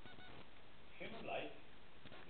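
A man's voice: one short utterance about a second in, over steady room hiss.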